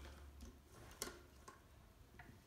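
Near silence with a few faint metallic ticks and one sharper click about a second in: a T-handle hex key seating in and turning the screw that holds the blade in a reed-gouging machine's blade holder.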